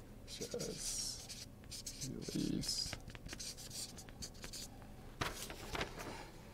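Felt-tip marker writing on a paper flip-chart pad, a series of short scratchy strokes.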